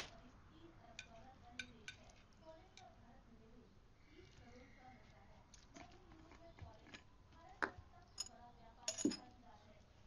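Faint, scattered clinks of a metal spoon on china bowls and plates, one every second or so, a little louder in the second half.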